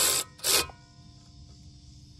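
A coarse rubbing scrape ends just after the start and comes once more, briefly, about half a second in. Then a quiet stretch follows with the faint, steady chirring of crickets.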